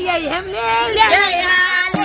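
A woman singing a Nepali dohori verse in a high voice, unaccompanied at first. Near the end a sustained instrument note and a drum stroke come in as the accompaniment starts.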